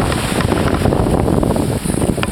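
Wind buffeting the camera microphone with a steady rumble, over the wash of small waves running up the sand.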